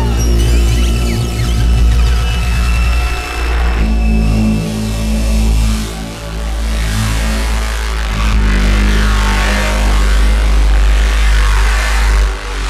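IDM electronic music: a deep, sustained bass line under rapid pulsing low notes, with hissy noise washes swelling up in the second half.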